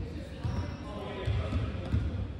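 A volleyball being hit back and forth in a gymnasium: a few sharp thuds of hands striking the ball, echoing in the hall, with faint voices in the background.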